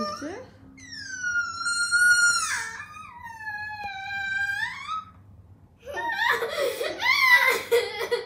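A young girl crying hard: two long, high-pitched wails in the first five seconds, then choppy, broken sobbing near the end.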